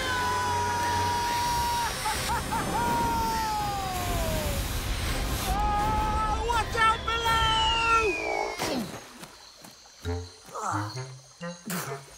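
A man screaming in two long drawn-out cries, each sliding down in pitch at its end, over background music and sloshing water. After about nine seconds the screaming stops and only lighter, broken sounds remain.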